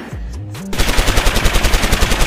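Machine-gun fire sound effect: a rapid run of shots, about ten a second, starting about three-quarters of a second in.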